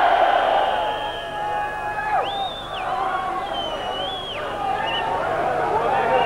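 Large rock-concert crowd shouting and cheering between songs, many voices overlapping. Two long, high, steady tones rise above the crowd, one a little after two seconds in and a longer one around the middle.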